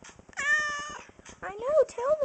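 Domestic cat meowing twice: first a long call held at a level pitch, then one that rises and falls.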